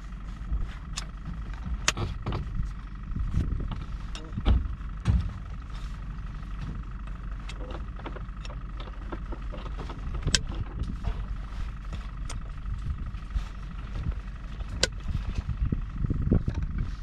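The towing SUV's engine running with a steady low rumble, with scattered sharp clicks and knocks, the loudest about four and a half seconds in.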